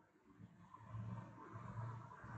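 A low rumble with a pulsing hum rises out of near silence about a third of a second in and grows steadily louder.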